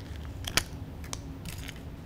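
Plastic jar of acrylic gel medium being opened and handled by hand: a few light clicks and crinkles of the lid and seal, the sharpest about half a second in.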